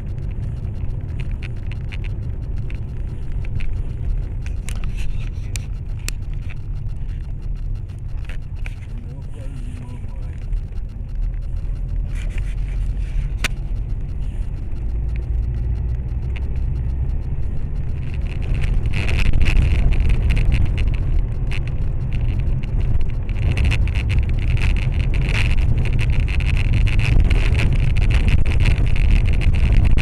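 Car cabin noise while driving on a snowy highway: a steady low rumble of engine and tyres. At about two-thirds through it becomes louder and hissier, with a few faint clicks scattered through.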